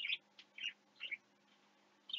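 Faint bird chirps: three short, high chirps about half a second apart, over a faint steady hum.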